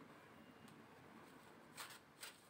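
Near silence, then near the end a brief faint rustle of a deck of cards being handled as a shuffle begins.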